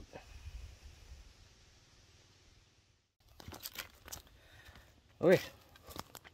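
Faint low rumble for about three seconds that drops out suddenly, then a few short crunching, rustling footsteps on forest ground before a man says 'Okay.'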